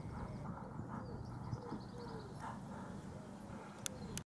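Muffled hoofbeats of a horse trotting on a sand arena, about two beats a second, slowing as it comes to a halt, with birds singing. Two sharp clicks near the end.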